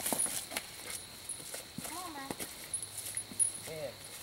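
Footsteps and rustling through leaf litter and brush, with two brief high-pitched vocal sounds, one about halfway through and one near the end.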